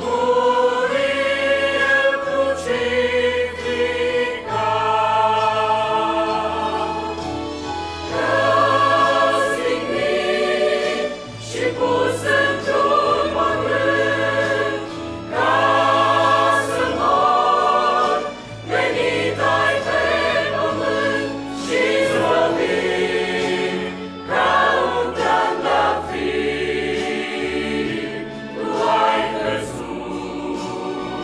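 Mixed choir of men's and women's voices singing a hymn in Romanian, in phrases of held notes with brief dips between them.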